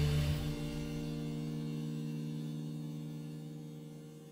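The end of a jazz ballad: the last notes stop about a third of a second in, and a steady, hum-like held chord lingers and fades out.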